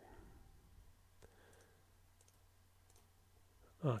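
Faint computer mouse clicks while selecting objects on screen: one distinct click about a second in, followed by a few fainter ticks, over quiet room tone.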